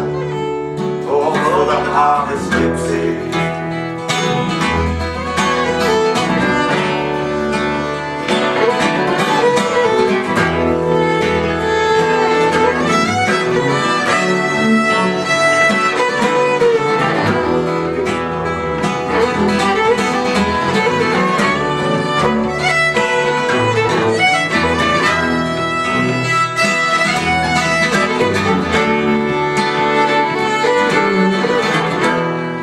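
Live acoustic folk band playing an instrumental break: a fiddle carries the melody over acoustic guitar and double bass.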